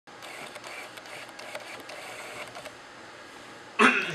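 Close rustling and handling noise with small knocks as someone moves against the microphone. It ends in a short, loud sound with a falling pitch near the end.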